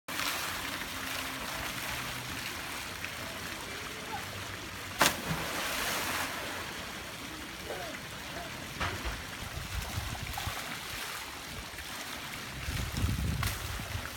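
Pool water spilling steadily over the rim of an infinity pool, with one sharp splash about five seconds in as a boy jumps into the water.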